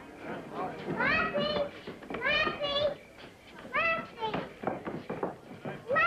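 A collie dog giving a series of short, high-pitched excited yelps and whines, several of them rising in pitch, about one a second.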